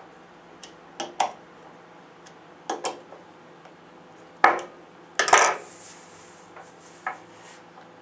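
Separate sharp metallic clicks and clinks, about eight of them, as a hand nut driver snugs down the four bolts holding the phase plug on a JBL 2412 compression driver. The loudest knocks come about halfway through.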